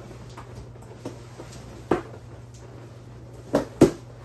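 Latex balloons being handled and pressed together onto a garland: a soft knock about two seconds in, then two sharper knocks close together near the end, the last the loudest.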